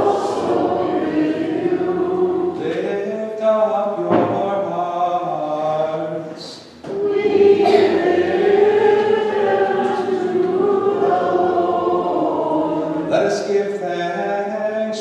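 Group of voices singing together in sustained phrases, with a short break for breath about seven seconds in.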